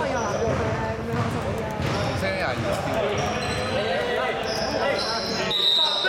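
A basketball bouncing on a hardwood gym floor, with a steady babble of players' voices in a large indoor hall and a few short high squeaks in the second half.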